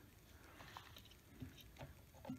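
Near silence, with a few faint taps and clicks as a digital caliper is handled against a metal slide table.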